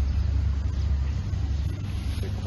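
A steady low rumble with no words over it.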